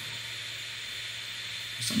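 Room air conditioner running with a steady hiss, so loud that it fills the room.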